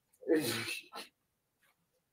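A single short, sharp vocal burst from a person, falling in pitch, followed by a brief second puff of breath about a second in.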